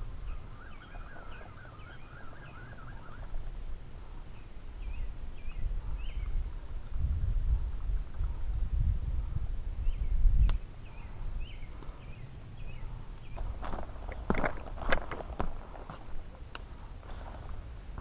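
Birds singing in short repeated chirping phrases, with a warbling trill in the first few seconds. Wind rumbles on the microphone in the middle and ends with a sharp click, and a cluster of clicks and knocks follows near the end.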